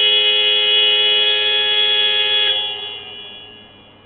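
Basketball scoreboard horn sounding one long steady blast of about three seconds, then dying away as it echoes round the hall. It sounds while the game clock is stopped, as when a substitution or timeout is signalled.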